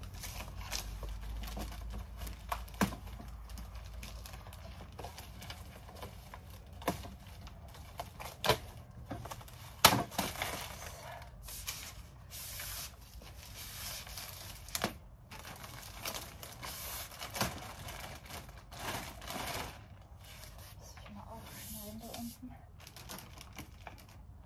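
A thin clear plastic sheet rustling and crinkling as it is unfolded and spread over a folding table. Several sharp clicks and knocks come through, the loudest about ten seconds in.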